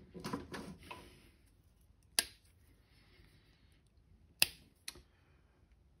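Handling noise as a CA-finished pen blank is taken off its bushings on the lathe: a light scraping rustle for the first second or so, then three sharp clicks, one about two seconds in and two close together near the end.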